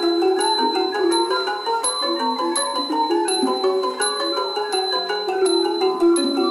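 Thai piphat ensemble playing a brisk dance piece: mallet instruments run rapid strings of short notes, over small hand cymbals struck in a steady beat about twice a second, their ringing held throughout.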